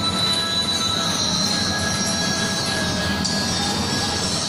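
Steady loud noise of a commercial kitchen's extraction and gas ranges running, with thin high whining tones held over it.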